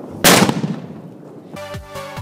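A Cobra 6 flash-powder firecracker goes off with a single sharp, loud bang about a quarter second in, dying away within half a second. Electronic dance music with a steady beat starts near the end.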